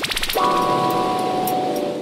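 A short musical sting: a quick sweep of tones, then a held chord that rings on and fades away near the end.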